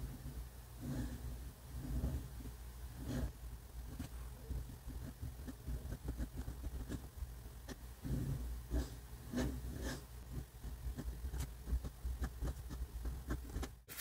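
Flexible FA nib of a Pilot Custom 912 fountain pen scratching faintly across paper while writing, in irregular small scrapes and ticks as strokes start and stop.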